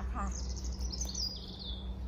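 A songbird singing: a run of high, quick notes that step down in pitch, ending shortly before two seconds in, over a steady low hum.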